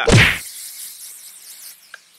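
Aerosol hairspray can spraying: one long hiss that starts with a loud burst and fades out over about a second and a half.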